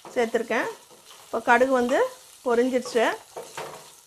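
Peanuts, green chillies and curry leaves sizzling in hot oil in a nonstick kadai, stirred with a wooden spatula. A person's voice sounds over it in several short phrases.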